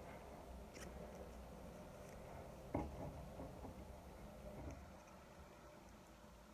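Faint snips of Scotch scissors cutting through thickly folded paper: a few quiet cuts, the clearest about three seconds in.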